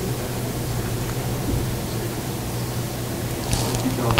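Steady hiss with a low electrical hum from a battery-powered microphone that keeps cutting in and out, which the speaker takes for failing batteries.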